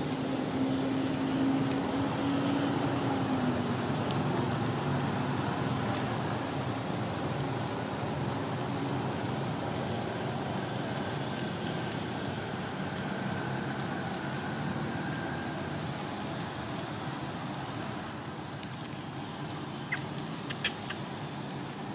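Steady outdoor background noise, with a faint low hum in the first few seconds that dips slightly in pitch.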